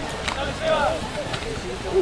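Indistinct voices of people talking in the background, with a couple of faint clicks.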